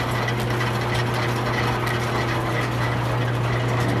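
Overhead line shaft turning, with its flat belts and pulleys running: a steady low hum with a faint thin whine above it.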